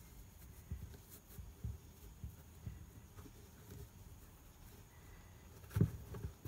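Faint handling noise of hands adjusting the laces on a sneaker: soft scattered low thumps and rustles, with a louder thump near the end.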